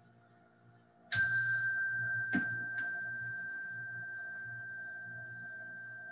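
A meditation bell struck once about a second in. One clear high tone rings on and slowly fades, marking the end of the silent meditation.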